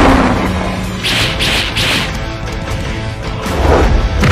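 Dramatic background music with fight sound effects laid over it: several whooshes and impact hits for supernatural energy blasts.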